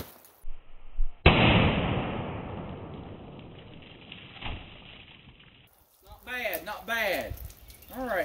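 A .380 ACP pistol shot into water jugs: one muffled bang about a second in, followed by a long rumble that fades away over about four seconds.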